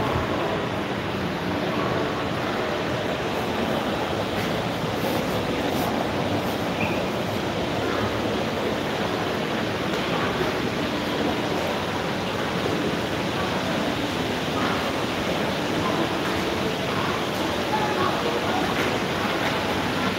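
Steady ambience of an indoor shopping-mall concourse: an even wash of noise with faint, distant voices.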